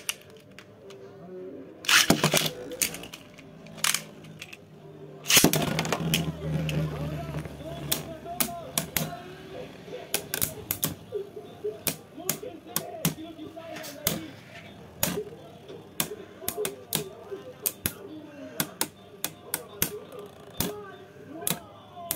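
Two Beyblade spinning tops whirring in a plastic stadium and clacking against each other again and again, sharp clicks coming several times a second. They start with two loud bursts in the first six seconds, as the tops are launched.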